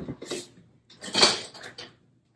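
Metal kitchen utensils rattling and clinking as a big spoon is fetched from among them: a short rattle at the start, then a louder clatter about a second in.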